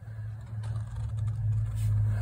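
A steady low hum with a few faint light ticks about half a second to a second in.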